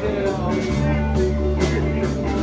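Live rock band playing between sung lines: electric guitar over a drum kit, with sustained low notes and cymbal hits.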